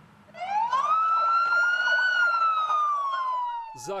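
Police car siren wailing: after a brief near-silent gap the tone climbs quickly, then rises slowly to a peak and slides slowly back down in one long sweep.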